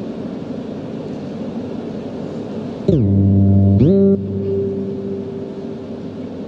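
Piano notes die away, then about three seconds in a loud electronic keyboard tone comes in and swoops steeply down in pitch, holds a low note for under a second, and swoops back up before settling into a steady held note.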